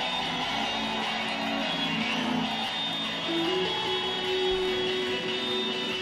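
Electric guitars of a live rock band playing held, ringing notes in a quiet stretch without drums or singing.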